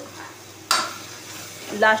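Steel ladle stirring and scraping thick masala paste in a steel kadhai over a faint sizzle of frying oil, with one sharp scrape about two-thirds of a second in. The masala has been fried until the oil separates.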